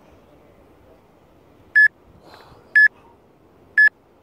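Three short, identical electronic beeps one second apart, in the pattern of a workout interval timer counting down, over a faint steady background noise.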